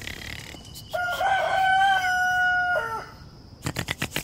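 A rooster crowing once: one long call of about two seconds that holds steady, then drops at the end. A few short clicks follow near the end.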